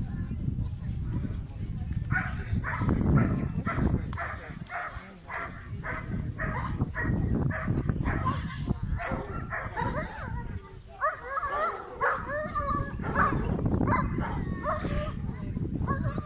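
A large dog barking over and over, about two barks a second, then higher wavering whines.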